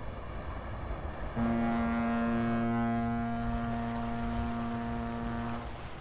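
A ship's horn sounding one long, steady blast of about four seconds. It comes in about a second and a half in and stops shortly before the end, over a low steady background noise.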